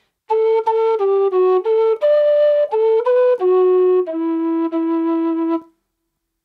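Low whistle playing one phrase of an Irish march in E minor: about ten clean separate notes starting on an A on the upbeat, ending on a long held low E.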